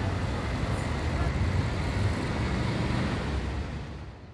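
City street ambience: a steady low rumble of road traffic under a wash of urban noise, fading out toward the end.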